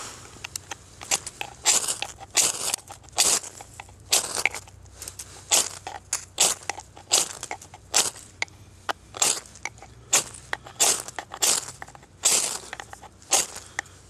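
Knife blade scraped hard down a ferrocerium fire steel, about two rasping strokes a second kept up throughout, throwing sparks into dry tinder to light it.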